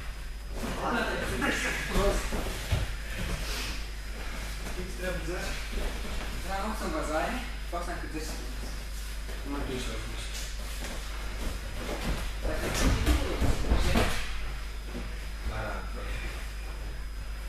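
Indistinct voices talking, with a louder burst of noise and knocks about three-quarters of the way through.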